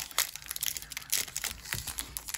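A Pokémon Fusion Strike booster pack's foil wrapper crinkling and tearing as it is opened: an irregular run of crackles and rustles.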